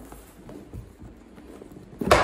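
Cardboard box lid being worked loose and lifted off its base: faint rubbing with a few light knocks.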